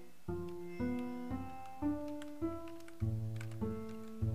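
8Dio Bazantar sample library (a five-string acoustic bass with sympathetic and drone strings) playing its plucked patch: single plucked notes about two a second, each ringing on with overtones. Near the end a lower note is plucked again and again.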